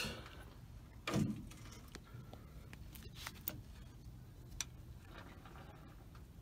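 Hand lever grease gun being worked on a front-suspension grease fitting: a short low sound about a second in, then a few faint clicks.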